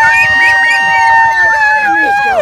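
A long, high-pitched yell held at one steady pitch, with other voices shouting more faintly underneath.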